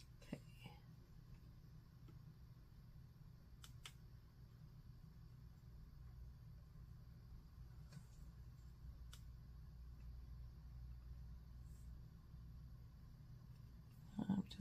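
Near silence: room tone with a steady low hum and a few faint clicks.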